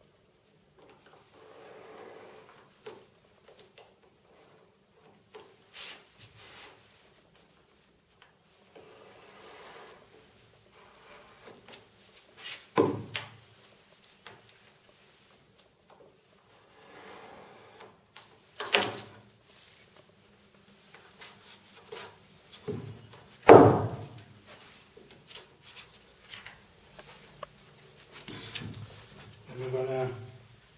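Sharp craft knife trimming pressure-sensitive laminate along the edges of an acrylic block: faint scraping cuts and small clicks. A few louder knocks are scattered through, the loudest near the end.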